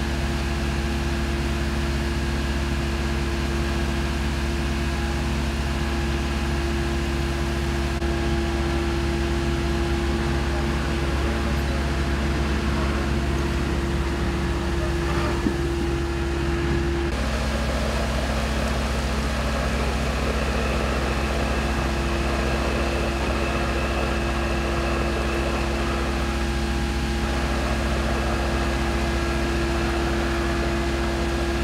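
Fire appliance engines and pumps running steadily, a constant hum with a few held tones over a low rumble; the mix changes slightly a little over halfway through.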